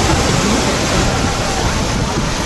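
Steady rush of river water pouring over a low concrete weir.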